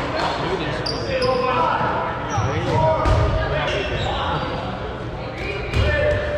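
Dodgeballs bouncing and smacking on a hardwood gym floor during play, among players' shouts that echo around the large hall.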